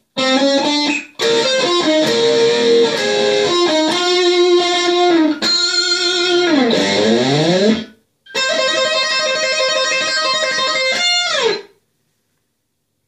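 Gold-top Les Paul-style electric guitar playing a lead phrase: a run of single notes and double stops, with a slide down about seven seconds in. After a short break, a held note rings for about three seconds and ends with a quick slide down.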